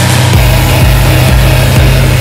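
Large tractor's diesel engine running loud and steady as it pulls a tipping trailer.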